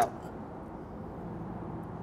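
Steady low background hiss and hum with no distinct event.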